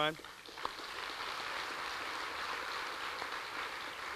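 Audience applauding, starting a moment in and holding steady.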